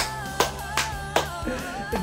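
Four quick hand claps, about 0.4 s apart, over a woman's held, wavering sung note with band accompaniment.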